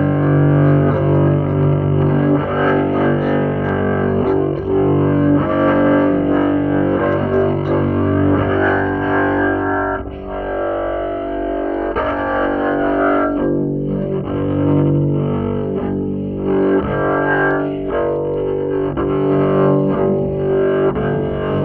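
Solo double bass in free improvisation: long held notes with several tones sounding together and a few sharp attacks. The lowest notes drop out for a couple of seconds about halfway through, leaving higher notes.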